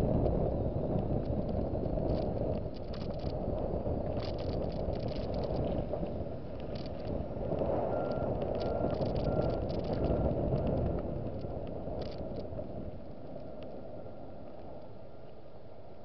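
Car driving slowly over wet pavement, heard from inside the cabin: a steady low rumble of engine and tyres with scattered small clicks and rattles. The rumble eases to a quieter, even hum in the last few seconds as the car slows.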